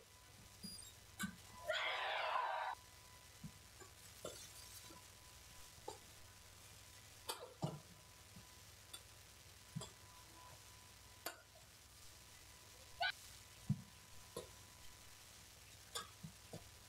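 Badminton rally: a series of sharp, irregularly spaced racket hits on the shuttlecock and players' shoes on the court. About two seconds in there is a louder noisy burst lasting about a second.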